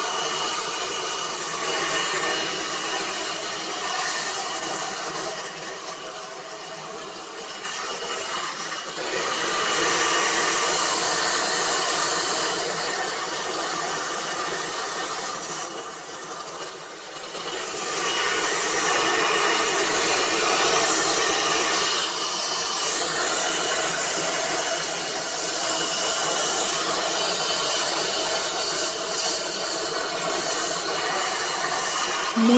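Handheld hair dryer blowing hair, a steady rush of air with a motor whine. The sound swells and fades as the dryer is moved around the head, dipping twice.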